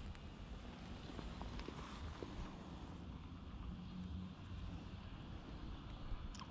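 Quiet outdoor background: a faint, steady low rumble with no distinct events.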